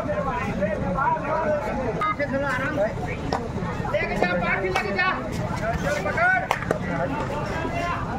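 A crowd of players and spectators talking and shouting over one another, with several sharp knocks in the second half.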